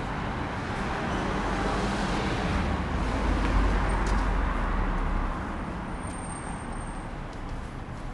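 City street traffic: a car passes by, its sound swelling about three seconds in and falling away a little after five.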